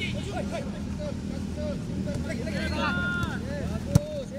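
Short shouted calls from several players across a football training pitch, over a steady low motor hum. A single sharp thump comes near the end.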